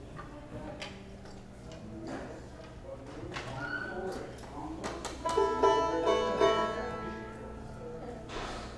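Banjo being handled and picked between songs: scattered clicks and knocks, then from about five seconds in a few plucked notes and a chord ring out for about two seconds and fade.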